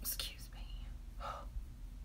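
A woman whispering under her breath: a few short, breathy words in the first half second, then another soft one just past the middle.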